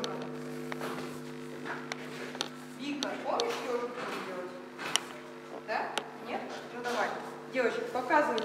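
Young children's voices: a few short calls and murmurs over a steady low drone, with scattered light taps and knocks.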